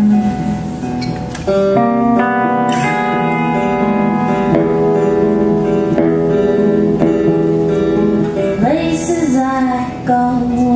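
Guitar playing an instrumental passage of a slow folk song, holding ringing chords with new notes struck every second or so. A voice slides back in near the end.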